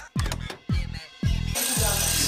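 Background music with deep, falling bass-drum hits. About one and a half seconds in, a loud bell starts ringing continuously: the final bell.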